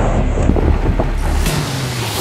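Jeep Rubicon's engine running hard as the off-roader churns through a mud pit, with mud and water spraying and wind buffeting the microphone.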